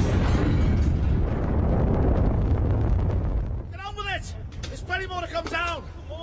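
Gas riser rupturing in an explosion: a deep, dense rumble already under way that stays loud for about three and a half seconds and then dies down. Men shout over the tail of it near the end.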